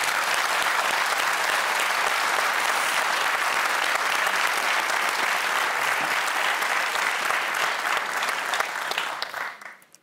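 Studio audience applauding: the clapping breaks out at once, holds steady, and dies away near the end.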